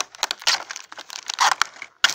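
Plastic toy packaging crinkling and crackling as it is handled, in a few short irregular bursts.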